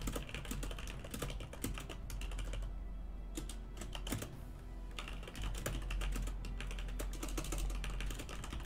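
Fairly quiet typing on a computer keyboard: a run of irregular key clicks, over a steady low hum.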